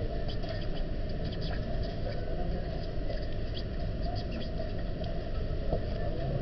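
Steady low room rumble with faint scratching and small ticks from a pen writing on paper, and a light click near the end.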